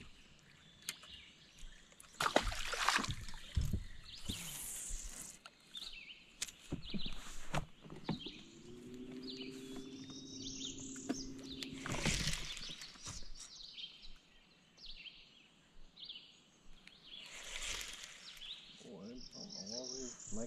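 Birds chirping and calling in the woods around the lake, with a few knocks and splashes from the boat and fishing tackle. A steady low hum runs for about four seconds in the middle.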